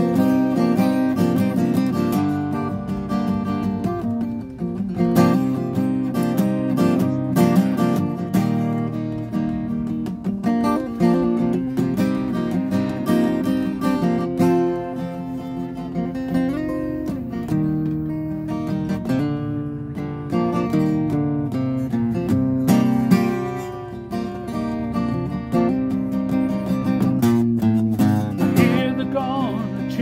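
Acoustic guitar played solo, strumming and picking chords through an instrumental break of a folk song, with no voice.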